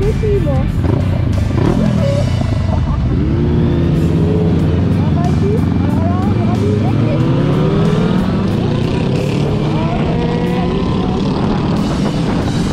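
Several motorcycles pulling away from a stop, their engines rising in pitch as they accelerate, over steady wind noise on the microphone.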